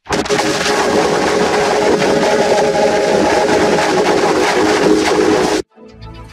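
Harsh, loud distorted noise with a few faint held tones underneath: a logo's soundtrack pushed through heavy audio effects. It starts abruptly and cuts off suddenly near the end.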